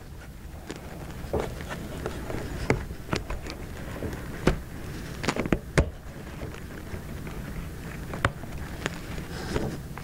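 Hands fitting an iPad into a plastic mount holder and hooking its elastic bungee cords over the corners: irregular light clicks and knocks from plastic handling, over a steady low hum.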